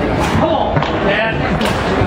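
Sharp knocks from a foosball table in play, the ball and rods striking, over the chatter of a crowded hall.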